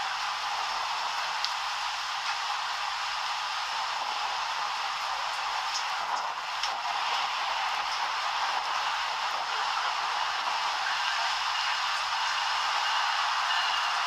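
Steady hiss of outdoor background noise with a few faint ticks, without any low rumble.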